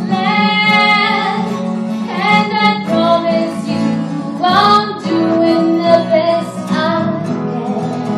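A woman singing live with acoustic guitar accompaniment, holding long notes, several of which slide up at their start.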